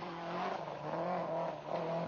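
Rally car engine running hard at speed on a stage, its note holding fairly steady with small dips and rises in pitch.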